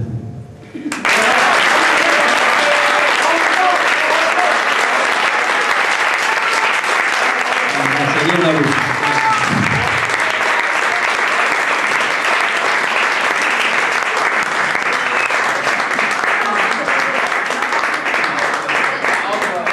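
Audience applauding. The applause starts suddenly about a second in, right after the last line of a recited poem, and stays steady throughout.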